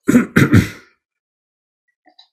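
A man clearing his throat in two short bursts, both within the first second.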